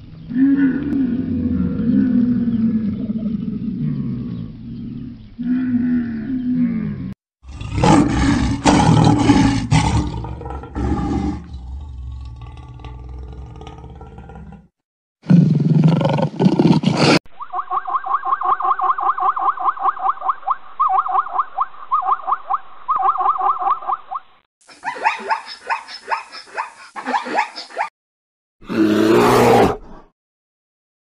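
A run of different animal calls joined by abrupt cuts. It opens with a dromedary camel groaning in deep, wavering calls for about seven seconds. Several other animals follow, including a lion roaring about halfway through, then a fast pulsing call that lasts several seconds.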